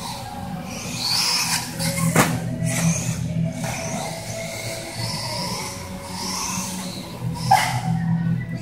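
Electric RC buggy (Tekno ET410) motor whining, rising and falling in pitch several times as the car speeds up and slows through the track, with a sharp knock about two seconds in and another near the end.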